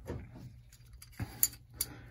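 A few light metal clicks, about a second in, as a transmission gear and its synchro ring are picked up and knock against each other.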